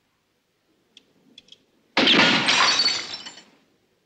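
A glass bottle shot with a revolver shatters in a sudden crash about halfway through, the breaking glass ringing on for about a second and a half before fading. A few faint clicks come just before it.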